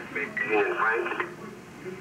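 Emergency-services dispatch voice over a scanner radio, a short transmission that ends about a second in, followed by quieter background.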